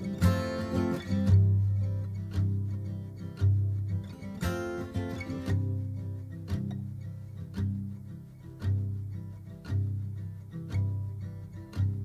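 Instrumental passage of a slow Dutch-language song played live: strummed acoustic guitar over double bass notes that change about once a second, with two fuller accents, one about a second in and one about four seconds in.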